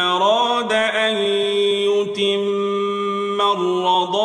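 A single voice reciting a Quranic verse in the melodic tajweed style, holding long, drawn-out notes with slow glides between pitches.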